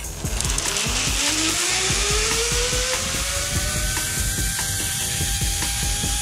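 Zip line trolley pulleys running along the steel cable, a whine that rises in pitch as the rider picks up speed and then holds steady. Wind rushes over the microphone under it.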